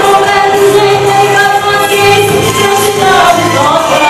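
A man and a woman singing a gospel song through a PA system over instrumental backing with a bass line. The song holds a long sustained note, and the melody moves upward near the end.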